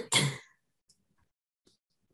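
A short burst of a person's voice near the start, then near silence.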